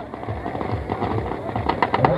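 Firecrackers packed into a Ravana effigy crackling and popping in rapid, irregular bursts as the effigy burns, over the noise of a large crowd.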